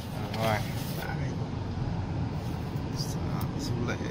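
Steady low road and engine rumble inside a moving car's cabin, with a brief voice sound about half a second in and another near the end.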